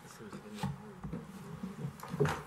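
Faint, off-microphone voices and low room noise over a steady electrical buzz.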